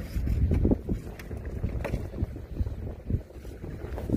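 Wind buffeting the microphone aboard a fishing boat at sea: a heavy, low rumble that rises and falls unevenly in gusts.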